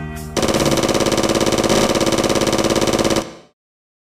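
A long burst of rapid automatic gunfire, a machine-gun sound effect, at about a dozen shots a second for nearly three seconds. It fades out quickly into silence.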